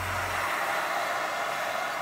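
Cordless drill running steadily, boring a 30 mm hole through the bottom of a boat's hull.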